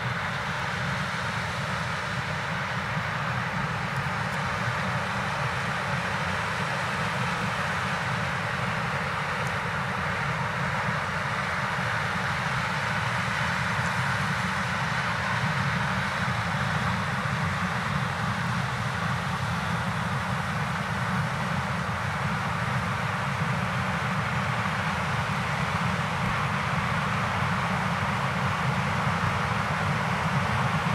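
New Holland CX combine harvester with a Geringhoff corn header running steadily while harvesting maize: a continuous engine and threshing drone that grows slightly louder near the end.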